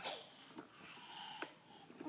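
A toddler's soft, breathy laughter, a noisy burst at first and then a faint held squeal, with a small click about a second and a half in.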